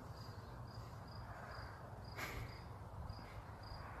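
A cricket chirping faintly in an even rhythm, about three short chirps a second, over a low background rumble. A brief soft rustle comes about two seconds in.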